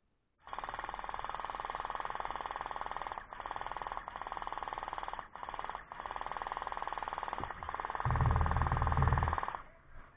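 Gel blaster fired on full auto: a rapid, even mechanical rattle held for about nine seconds, broken by a few very short pauses. A deep rumble joins it about eight seconds in.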